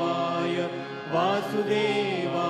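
A man chanting Sanskrit mantras in long, drawn-out, sing-song notes, with a short lull just before the middle.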